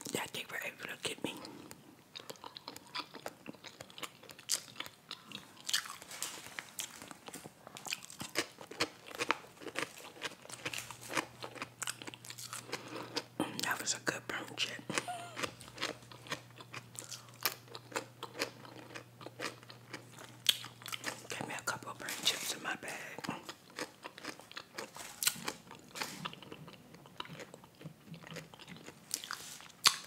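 Close-miked chewing and crunching of a grilled hot pepper cheese sub with kettle-style potato chips inside: irregular crisp crunches and wet mouth clicks. A faint low hum runs through the middle.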